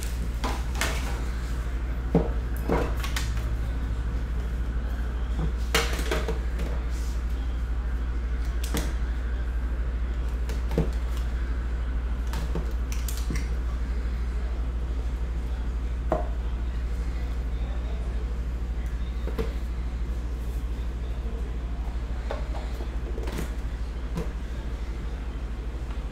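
Scattered clicks and light metallic clinks from a Panini Immaculate metal tin box being opened and its card taken out, a few seconds apart, over a steady low hum.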